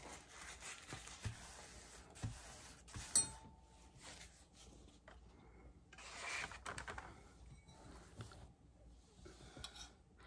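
Faint handling sounds at a table: a paper towel being rubbed and set down, with a single sharp click about three seconds in.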